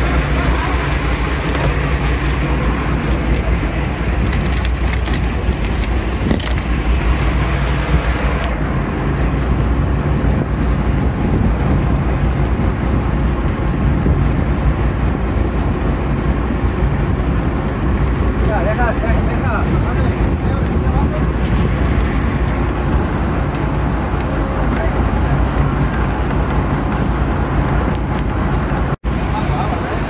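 Sportfishing boat's engine running, a steady low drone, with rushing water and wind over it. The sound cuts out for a moment near the end.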